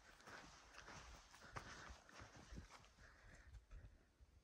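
Faint footsteps on a stony mountain trail: a few irregular steps.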